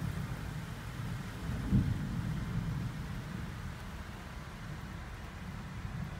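Heavy thunderstorm rain pounding on a vehicle's roof and windshield, heard from inside the cab, over a steady low rumble. The rumble swells briefly about two seconds in.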